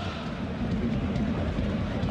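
Steady noise of a large football stadium crowd, heard as a continuous low wash of many voices.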